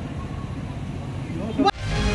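Outdoor background noise: a steady low rumble with faint men's voices, and a brief rising voice about one and a half seconds in, then the sound cuts off abruptly just before the end.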